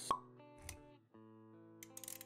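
Intro music with sustained synth-like notes and sound effects: a sharp pop just after the start, a low thud a little over half a second in, a brief drop-out about a second in, then the notes resume.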